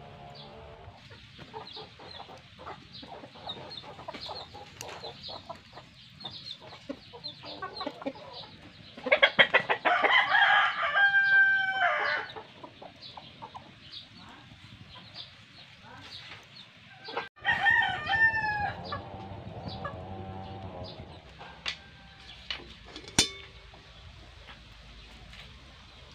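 A rooster crowing twice: a long crow about nine seconds in, the loudest sound, and a shorter one a little past halfway.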